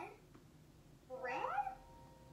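A cartoon child's voice: one short drawn-out syllable about a second in, rising sharply in pitch and then held, with no clear words.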